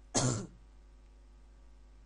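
A person clearing their throat once, a short sharp burst of about a third of a second.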